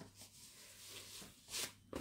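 A piece of 28-count evenweave embroidery fabric being unfolded and handled: a faint cloth rustle, with one short, louder rustle near the end.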